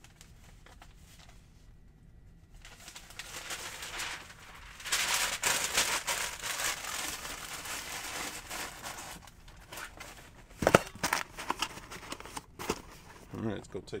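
Packing paper crinkling for several seconds as it is stuffed into the top of a cardboard Priority Mail shoe box, followed by a few sharp knocks and taps as the box is handled.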